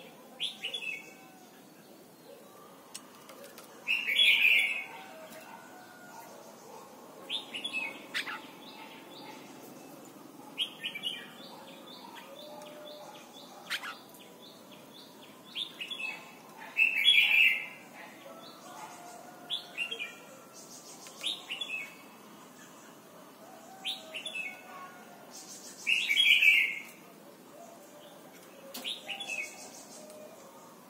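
Red-whiskered bulbul singing short, whistled song phrases, repeated every few seconds, with three louder, fuller phrases among them.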